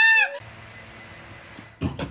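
A high-pitched voice calling out in short rising-and-falling arches, cut off within the first half second. It gives way to a faint steady hum, and a short sharp knock comes near the end.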